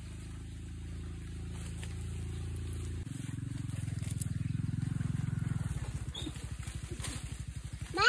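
A small engine running at a low pitch. Its note changes about three seconds in and again near six seconds, where it settles into a regular fast pulsing beat. A voice calls out right at the end.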